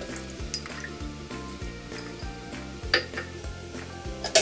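Water poured into a hot wok of chicken and carrots in sauce, sizzling as it hits the pan, with a sharp clink against the pan just before three seconds in.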